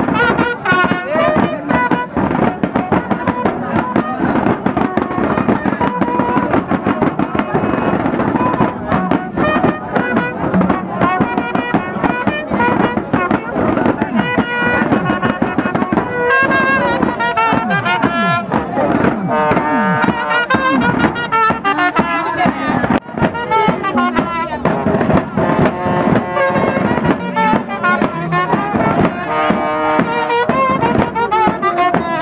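Music with brass instruments.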